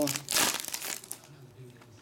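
Foil wrapper of a Panini Select soccer trading-card pack torn open and crinkled by hand: one loud rip about a third of a second in, then a few smaller crinkles that die away after about a second.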